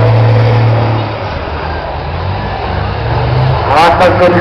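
Race trucks' diesel engines running on a dirt track: strong in the first second, easing off, then building again. A commentator's voice comes in near the end.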